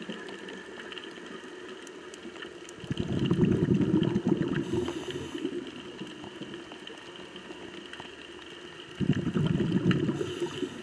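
Underwater sound of a diver's exhaled bubbles rumbling out twice, about three seconds in for a couple of seconds and again near the end, over a steady low background with scattered faint clicks.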